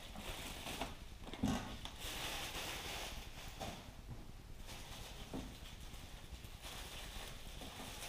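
Faint rustling of a clear plastic bag as it is pulled off a machine and handled, with a few soft knocks of handling.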